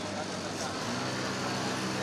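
Busy street-market background noise with traffic, and a steady low engine hum coming in about a second in.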